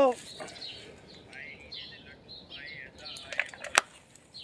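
Faint bird chirps outdoors, with a few sharp clicks near the end.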